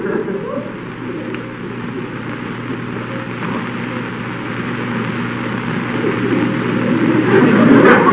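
Studio audience laughing, swelling steadily louder, with a few sharp knocks near the end.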